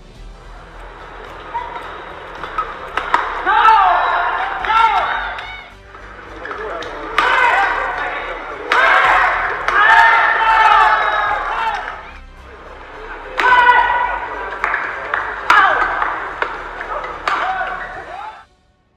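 Voices from the original badminton broadcast in several loud spells, over background music, with a few sharp clicks typical of racket hits on a shuttlecock.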